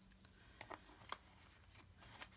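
Near silence with a few faint clicks and light handling noise as a capped fountain pen is handled and slipped back into a waxed canvas tool roll.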